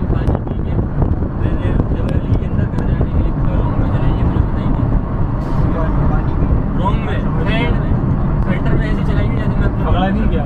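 Steady low rumble of road and wind noise inside a moving car, with faint voices over it.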